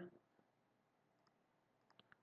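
Near silence with a few faint computer mouse clicks: one early, a couple more near the end.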